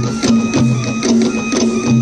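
Bastar tribal folk music playing for a Gedi stilt dance. A low drum beats about twice a second under a quicker rhythmic clatter of sharp clicks, with a steady high tone held over it.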